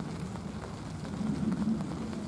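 Low, steady background rumble in a pause between spoken lines, swelling slightly about one and a half seconds in.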